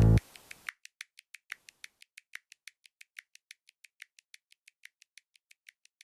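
Music cuts off just after the start, followed by a rapid, even ticking of about six or seven clicks a second that slowly fades.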